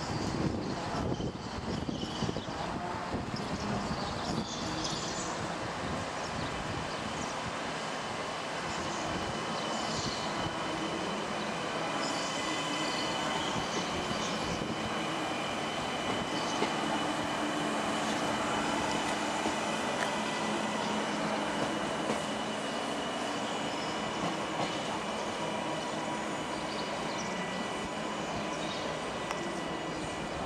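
CP Class 3400 electric multiple unit pulling away and passing close by, its running noise steady and a little louder as it goes past. A thin, steady high tone rides over it through the middle of the pass.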